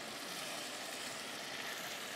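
Pepper mix sizzling steadily in a frying pan on the stove.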